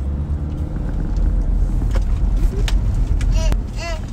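Low, steady rumble of a car heard from inside the cabin, with a few faint clicks and a short burst of voice near the end.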